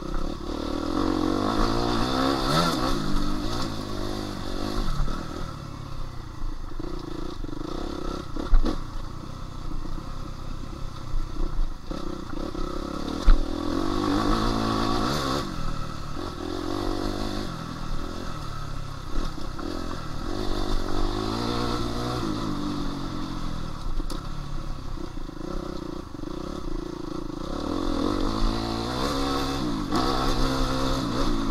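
A 2016 Suzuki RM-Z250 motocross bike's single-cylinder four-stroke engine, heard from the rider's position, revving up and easing off again and again on a wooded dirt trail. Two sharp knocks stand out, about 8 and 13 seconds in.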